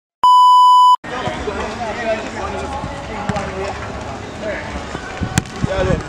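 A loud 1 kHz test-tone beep from a colour-bars intro, lasting about three quarters of a second. Then football players call and shout on the pitch, with sharp ball kicks about three and five seconds in.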